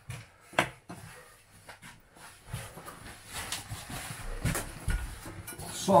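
Rustling of clothing and a fabric backpack being handled, with a sharp click about half a second in and two dull knocks near the end as the bag is set down on the counter.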